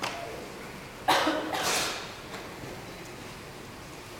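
Karate uniforms (gi) snapping sharply as three karateka strike in unison: a short snap at the very start, then two louder snaps in quick succession about a second in.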